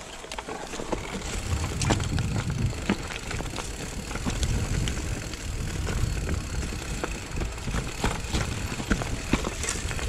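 Mountain bike riding down a dry dirt trail: a steady low rumble of tyres over the ground, broken by frequent sharp rattles and knocks from the bike over bumps.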